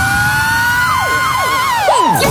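Siren-like electronic sound effect in a dance-music mix: a tone rising slowly in pitch beside a steady higher tone, then several quick falling sweeps in the second half.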